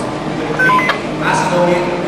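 A few short electronic beeps, like telephone keypad tones, just over half a second in, heard over voices.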